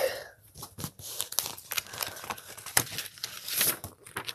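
Paper cover artwork of a DVD case crinkling and rustling in irregular crackles as it is handled and pulled about, the sounds growing louder toward the end.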